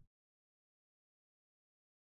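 Near silence: dead silence, without even room noise, as if the sound track is gated off between sounds.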